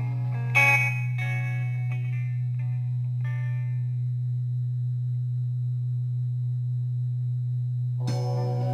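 Rock album music: a guitar chord struck about half a second in rings out and fades away over the next few seconds, over a steady low drone that then holds alone until new guitar playing comes in at the very end.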